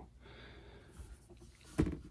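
A single short knock near the end, over faint room noise.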